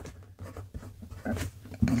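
Jowo medium steel fountain pen nib writing block capitals on paper: a run of short scratching strokes, one a little sharper past the middle.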